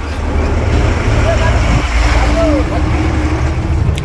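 Steady low rumble of a moving bus's engine and road noise, heard from inside the bus, with faint voices in the background.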